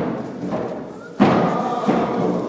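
Deep drum beats keeping a steady dance rhythm: one stroke at the start, a pause of about a second, then two strong strokes, the first the loudest, with faint voices alongside.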